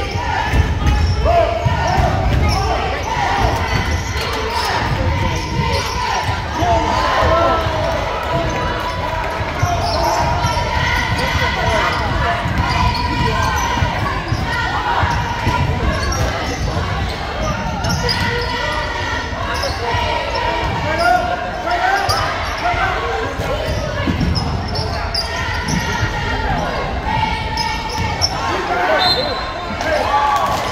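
Basketball bouncing on a hardwood gym floor during play, with players' and spectators' voices carrying through a large gym hall.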